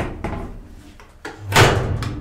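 A few light clicks, then a loud door clunk about one and a half seconds in as the 1959 ASEA service elevator's door shuts and the car sets off, followed by a steady low hum.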